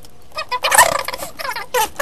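Human voices played back fast-forwarded: high-pitched, garbled, squeaky chatter that starts about half a second in after a brief lull.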